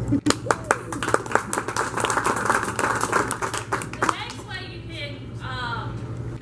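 Small audience clapping, dense and quick, fading out about four seconds in as voices start talking.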